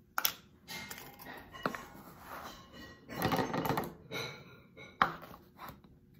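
Handling sounds from a plastic spice jar and measuring spoon: a sharp click as the jar is opened, then rustling and scraping as the spoon scoops dried parsley flakes. Another sharp knock near the end.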